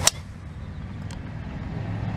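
A driver striking a golf ball off a tee: one sharp, loud crack at the very start, over a low steady background rumble. A much fainter click follows about a second later.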